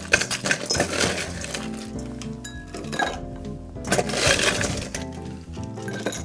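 Ice cubes dropped into a glass mixing glass holding the cocktail, clinking against the glass several times, over background music.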